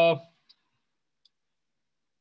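A man's drawn-out "uh" trailing off, then near silence broken by two faint clicks.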